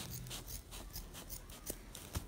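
Scissors snipping through soft polyester wadding: a quick run of faint cuts, one after another.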